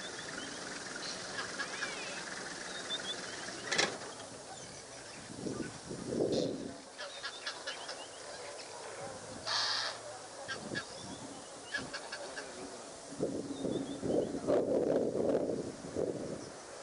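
Leopard lapping water at a waterhole: runs of quick soft clicks, about four a second. Birds chirp high and thin throughout, and there are two louder, lower calls or honks, about six seconds in and again near the end.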